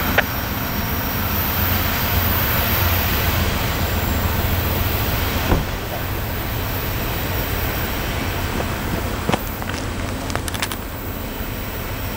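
Steady low rumble and hiss of a departing coal train rolling away down the line, slowly easing off, with a few faint sharp clicks about halfway through and near the end.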